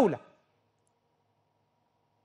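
A man's speech fades out on the last word in the first moment, then near silence for the rest.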